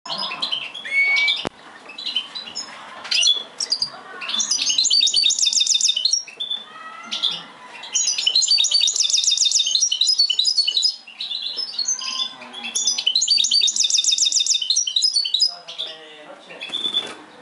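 Caged goldfinch × canary hybrid (a goldfinch mule) singing a varied twittering song, broken three times by long, fast, even trills. A single sharp click about a second and a half in.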